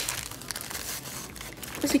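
Thin plastic packaging crinkling as a sleeve of mini nail files is handled.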